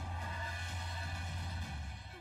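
Quiet anime soundtrack music: a low held drone under faint higher tones, dropping away near the end.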